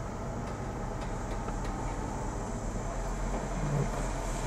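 Heavy diesel machinery running steadily: a tracked excavator loading dump trucks with soil, with a few faint knocks early on and a brief rise in engine pitch near the end.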